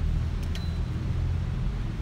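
Steady low background rumble with no speech, with a faint high thin tone about half a second in.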